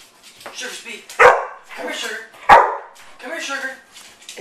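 Pit bull-type pet dog barking: two sharp, loud barks about a second and a half apart, with quieter vocal sounds between and after them.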